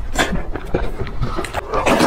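Close-miked mouth sounds of someone eating spicy instant noodles: wet chewing and smacking, with a louder slurp of noodles near the end.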